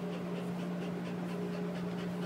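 Pit bull mix dog panting with her tongue out, quick even breaths about four a second, over a steady low hum.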